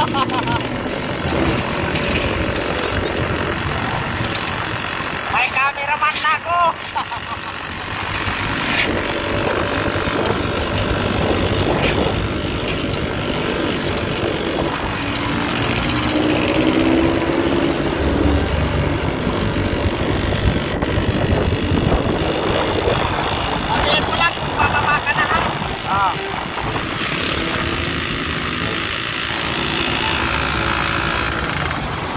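Motorcycle engine of a sidecar tricycle running steadily on the move, heard from the sidecar along with road and wind noise.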